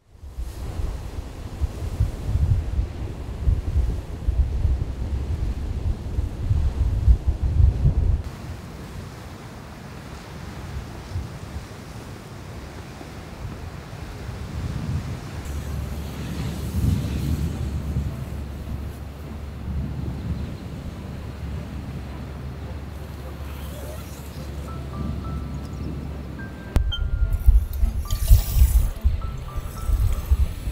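Gusty wind rumbling on the microphone over the sound of surf, with quiet background music; the wind gusts louder again near the end.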